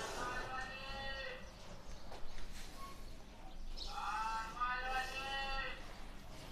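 Chalk squealing against a chalkboard as an arc is drawn: two long, high squeals, the first in the opening second and a half, the second starting about four seconds in and lasting about two seconds, with a few faint chalk ticks between them.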